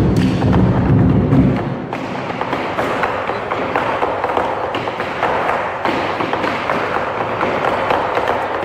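Ensemble of large Chinese barrel drums played with sticks: a heavy booming roll for the first couple of seconds, then dropping to lighter, rapid strikes with sharper taps.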